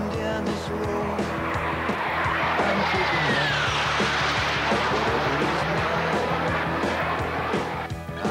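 Rock music playing, with a jet aircraft's roar swelling over the middle seconds and fading, and a whistling tone falling in pitch as it passes.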